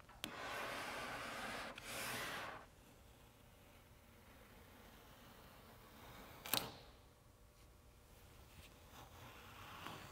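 Plastic squeegee rubbed across a vinyl decal's transfer tape on a car door: two stretches of dry scraping in the first two and a half seconds. Then near silence, broken by one sharp tick about six and a half seconds in.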